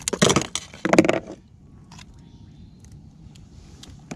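Two loud bursts of crackling handling noise in the first second and a half, as a hand-held fish is gripped and a lure is worked out of its mouth. A few faint clicks follow.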